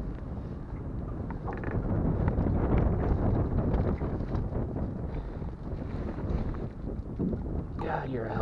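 Wind buffeting the microphone as a low rumble, strongest a few seconds in, with water moving in the boat's holding tank as a large muskie is held in it.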